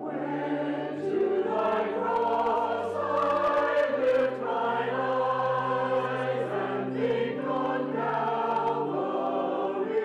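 Mixed church choir singing a hymn anthem in parts, over organ accompaniment holding long, steady low notes. The voices swell about a second in.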